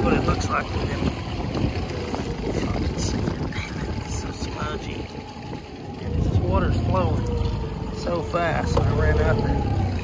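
Jon boat's outboard motor running at speed with the rush of wind and water. About six seconds in the rumble gets louder and the pitch wavers up and down.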